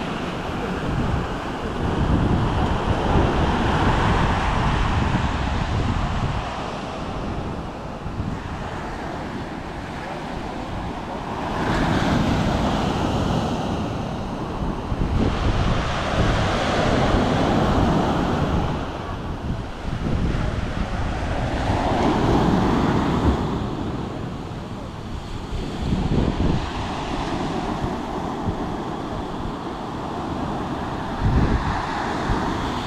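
Small ocean waves breaking at the shore and washing up the sand, swelling and fading every few seconds, with wind buffeting the microphone.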